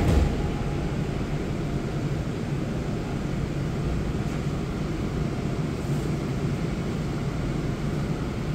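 Steady low hum and rumble inside a subway car standing at a platform, with one short thump right at the start.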